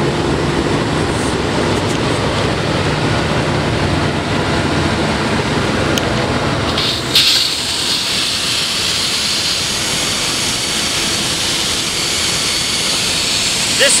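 Combination sewer cleaner's high-pressure water pump and engine running steadily, pumping water at about 85 gallons a minute and 2,000 PSI to a KEG torpedo nozzle. About seven seconds in the sound changes abruptly to a loud, hissing rush of high-pressure water jetting through the nozzle.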